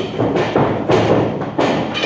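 Stick sparring in a boxing ring: a quick run of loud thuds and knocks, about four in two seconds, from sticks striking and feet landing on the ring mat.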